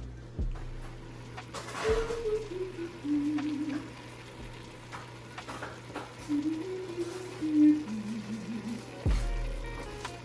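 A voice humming or crooning a slow tune in a few held notes, stepping up and down in two short phrases, over a faint sizzle of diced vegetables sautéing in an enameled cast-iron Dutch oven.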